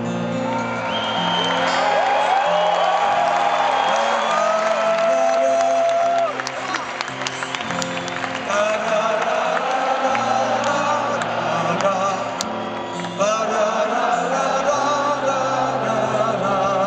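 Solo acoustic guitar strummed in steady chords, with a harmonica playing the melody over it in held, wavering notes. Whoops from a stadium crowd come through around the middle.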